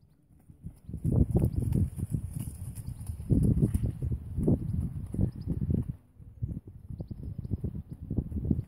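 A pony's hooves thudding on the soft arena surface as it trots, in irregular low thuds mixed with a person's running footsteps, easing off briefly about six seconds in.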